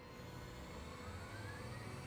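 Faint jet-like rocket engine sound effect from an anime soundtrack, a low rush with a whine that rises slowly in pitch.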